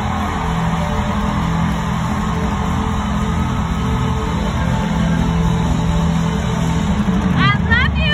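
Live R&B concert music over an arena PA, heard from the stands: a steady, held low chord, with a quick run of short rising high notes near the end.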